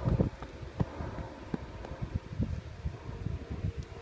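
Wind buffeting a phone's microphone outdoors: irregular low rumbles and bumps, with a few small handling knocks as the phone is moved.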